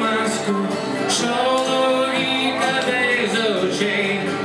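Live acoustic guitar song: a strummed acoustic guitar with a man singing over it.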